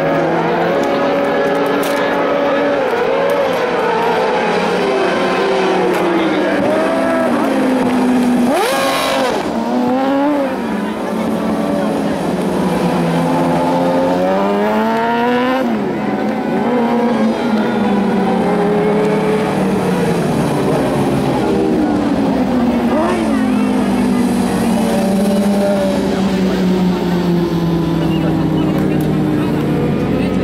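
Several carcross buggies racing at once, their motorcycle engines revving. The pitch climbs steeply and then drops again and again as the cars accelerate, shift and brake for the corners.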